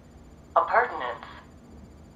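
A spoken pronunciation of the word "appurtenance" played from the computer, thin and telephone-like, starting about half a second in.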